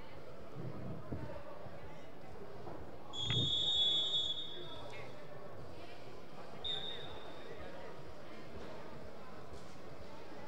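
A referee's whistle: one long, shrill blast lasting about a second and a half, starting about three seconds in, then a shorter blast near seven seconds, over faint background voices.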